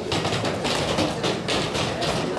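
Irregular taps and thumps, several a second, of people moving about and handling objects in a hall.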